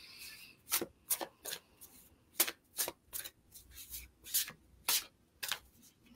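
An oracle card deck being shuffled by hand, quietly: about a dozen short card strokes at an uneven pace, roughly two a second, before a clarification card is drawn.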